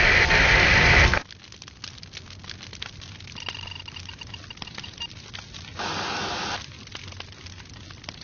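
Loud, steady rush of spraying water, cutting off suddenly about a second in. Then faint scattered crackles and clicks, with a brief hiss near the end.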